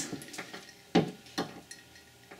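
Costume jewelry clicking lightly as it is handled: a few short metallic clicks, the two loudest about a second in and half a second apart.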